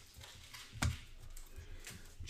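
Hands opening a trading card box and handling the cards: a sharp click a little under a second in and a lighter one near the end, with faint ticks of cardboard between.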